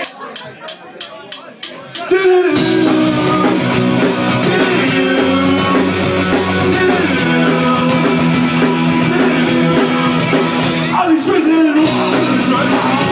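A drummer counts the band in with an eight count of drumsticks clicked together, about four clicks a second. A live punk rock band then comes in all at once, with electric guitars, bass and drum kit playing loud. The singer's voice enters near the end.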